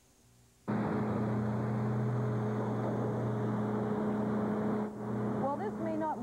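Truck engine running steadily with a low hum, cutting in suddenly after a moment of silence. A voice starts talking over it near the end.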